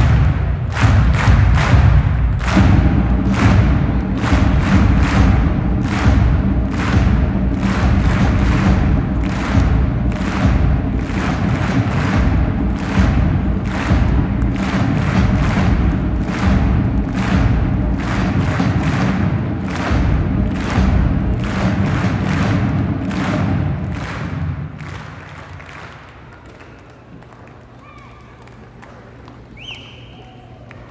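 Large marching band with sousaphones and a drum line playing a loud piece over a steady drum beat. The music ends about 24 seconds in, leaving much quieter hall sound.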